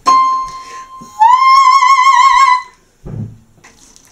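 A single high keyboard note struck and left to ring, then a woman sings the same high pitch, sliding up into it and holding it for about a second and a half with a wide vibrato. A brief low vocal sound follows near the end.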